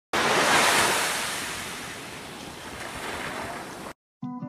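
Ocean surf washing onto a beach: a rush of wave noise that swells quickly, is loudest about half a second in, then eases to a steady wash and cuts off abruptly.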